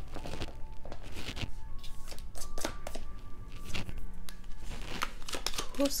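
A deck of tarot cards shuffled by hand: a quick, irregular run of papery flicks and rustles.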